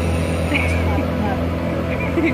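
Outboard motor running steadily as the boat travels at speed, with wind and water noise, and short wavering high sounds about half a second in and again near the end.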